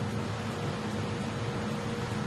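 Steady industrial hall ambience: an even hiss over a low hum, with one faint steady tone.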